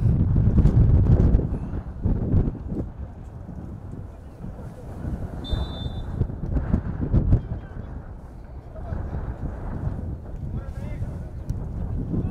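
Wind buffeting the microphone, heaviest in the first second or two, over the open sound of an outdoor football pitch with faint shouts of players. A short high whistle sounds about five and a half seconds in.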